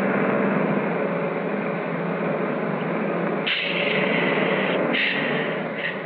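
Engine of a 1940s motor coach running as the bus pulls in, with two bursts of hiss about three and a half and five seconds in; the sound drops away near the end.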